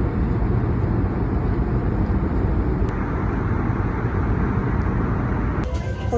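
Airliner cabin noise: the steady, low rumble of the jet engines and rushing air heard inside the passenger cabin.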